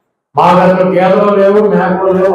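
A man speaking forcefully in Telugu into a handheld microphone, in a drawn-out, sing-song delivery. The voice starts abruptly after a moment of silence at the start.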